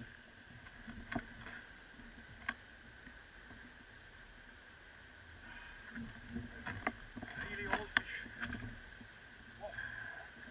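Quiet sounds on a small fishing boat: low water noise against the hull under a steady high buzz like summer insects. Scattered sharp clicks and knocks from gear and the boat, most of them bunched in the last few seconds.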